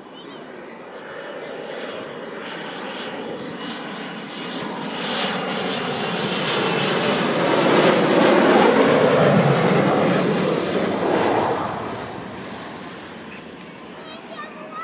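Panavia Tornado jet passing low on landing approach with its gear down, the noise of its two RB199 turbofan engines building over several seconds, loudest about eight to nine seconds in, then fading away.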